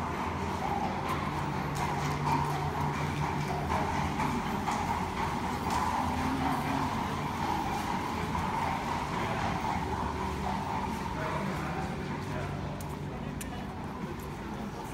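Horse hooves clip-clopping on paving, with the voices of people around.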